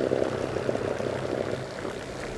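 Bow-mounted trolling motor running at high thrust, its propeller churning the water as the boat turns around: a steady rushing, bubbling wash with a faint hum underneath, fading a little.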